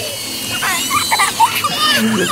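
Young children squealing and shouting excitedly without clear words, high-pitched and rising and falling, starting about half a second in.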